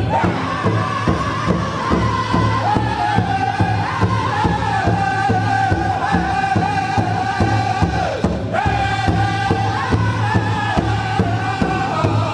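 Powwow drum group: a steady drumbeat under several voices chanting in unison on long held notes that step down in pitch.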